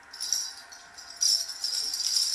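A handheld toy shaker being shaken, a rapid jingling rattle that grows louder a little past one second in.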